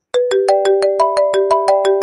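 Mobile phone ringtone: a quick run of bright, struck, marimba-like notes, about six a second, that stops near the end and rings away.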